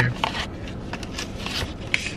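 Light scraping and rubbing of paper coffee cups being handled and turned in the hands, with a short sharp click near the end.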